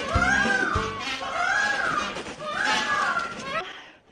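Indian (blue) peafowl giving three meow-like calls about a second apart, each rising then falling in pitch, over background music with a beat.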